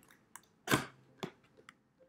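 Cardboard box lid being lifted open by hand: one short loud scrape about three quarters of a second in, with a few light taps and rustles of the cardboard around it.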